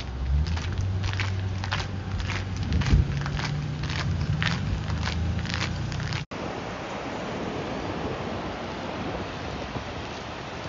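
Footsteps on a paved walkway, about two steps a second, over a low steady hum. After a sudden break about six seconds in, a steady wash of surf and wind on the microphone.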